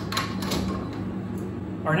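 Espresso machine portafilter being locked into the group head, giving a few short clicks in the first half second as the handle is twisted into place.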